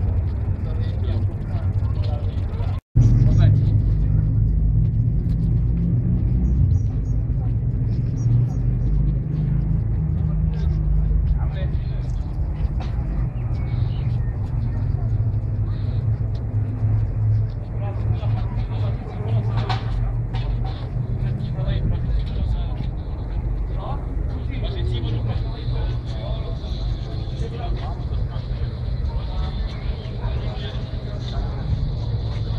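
A steady low rumble with indistinct voices over it. The sound drops out for an instant about three seconds in.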